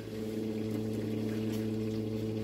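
A steady low mechanical hum with a few even overtones, unchanging throughout.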